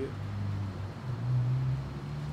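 Low, steady hum of an idling motor vehicle engine, its pitch drifting slightly up and down.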